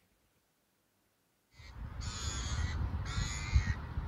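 Gulls calling over a lake, starting suddenly about a second and a half in: a few calls, each under a second long, one after another, over a low rumble. Before that, near silence.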